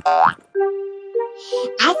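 A short cartoon sound effect with a quick bending pitch, followed by soft background music on a couple of held notes. A cartoon character's voice starts speaking near the end.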